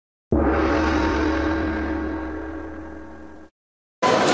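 A single deep gong-like metallic strike used as an intro sound effect: it starts abruptly, rings with many tones over a low rumble, fades slowly for about three seconds and then cuts off suddenly.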